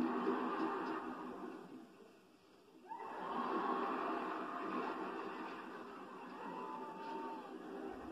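Sitcom soundtrack playing through a television's speakers: studio-audience laughter fading out, then background music that comes in with a sweep about three seconds in.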